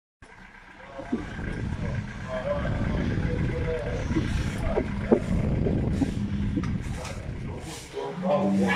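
Low, unsteady rumbling noise on a hand-held phone microphone as it is carried along, with a few faint, brief voices.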